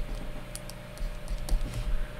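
Stylus tapping and scratching on a tablet screen during handwriting: a few light, sharp clicks over a low steady hum.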